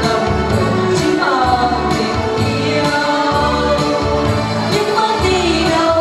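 Women's voices singing together over instrumental accompaniment with a repeating bass line, the sung melody sliding between notes.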